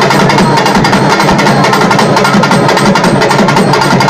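Urumi melam drum troupe playing together: many drums beaten in a loud, fast, dense rhythm that carries on without a break.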